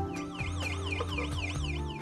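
Electronic warbling signal tone, the timekeeper's call telling the divers to surface, sweeping rapidly up and down about five times a second over steady background music.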